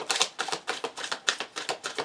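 Tarot cards being shuffled in the hands: a quick run of sharp card clicks, about six a second.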